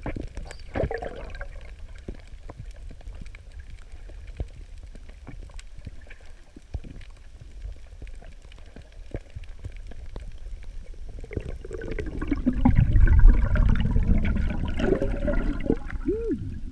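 Underwater sound picked up by a submerged camera: a low water rumble with scattered faint clicks. From about twelve seconds in, a louder sloshing, gurgling water noise swells up and continues to the end.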